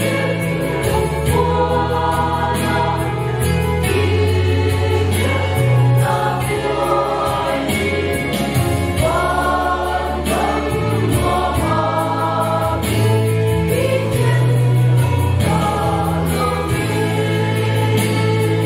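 A mixed choir of men and women singing a gospel song together over steady instrumental backing.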